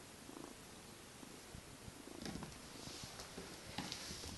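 A kitten purring, faint and steady, with a few light knocks near the end.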